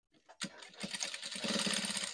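Industrial lockstitch sewing machine top stitching a fabric collar: it starts with a click, then speeds up into a fast, steady run of needle strokes.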